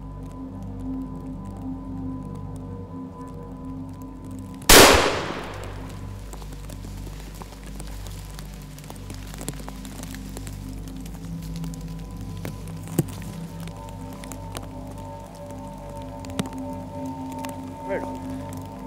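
A single gunshot fired at a grouse, a sharp crack about a third of the way in that rings off over about a second. Quiet background music plays throughout.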